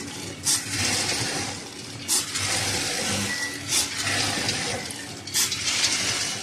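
Automatic popcorn packaging machine running in its cycle: a sharp stroke about every second and a half, four times, over a steady rustling hiss.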